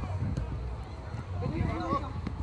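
Voices calling out during football play, with one voice rising clearly near the end, over a steady low rumble.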